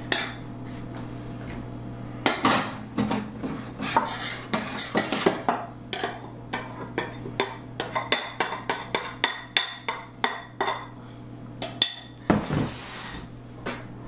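A metal spoon clinking and scraping against a glass mixing bowl as flour is spooned out and scraped into a stand mixer's steel bowl, with a quick run of taps in the middle. Near the end, a short rushing noise and a knock. A steady low hum runs underneath.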